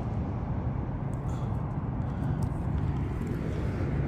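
Steady low rumble, with a few faint short rustles as a hand digs in soil and picks out a coin.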